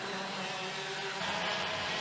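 IAME X30 125cc two-stroke kart engines buzzing as karts pass through a corner, a steady drone whose pitch shifts about a second in.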